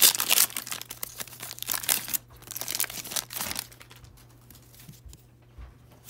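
Hockey card pack wrapper being torn open and crinkled by hand: dense crackling for the first two seconds or so, tapering off by about three and a half seconds into faint handling of the cards.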